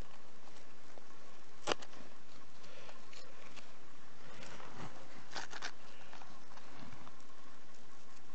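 A gloved hand scraping and raking loose clay and rock debris, with crumbling soil and small stones clicking. A sharp click about two seconds in is the loudest sound, and a quick cluster of clicks and scrapes follows a little past the middle.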